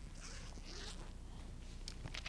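A few soft rustling swishes in the first second, over a low steady hum: handling noise from a microphone and book being carried.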